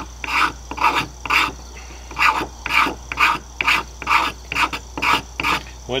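A knife blade scraping a stick of resin-rich fatwood in short, even strokes, about two a second, shaving off tinder.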